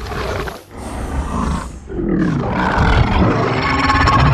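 King Ghidorah's roar, a film monster sound effect: short cries broken off twice in the first two seconds, then a longer roar with gliding pitch from about two seconds in.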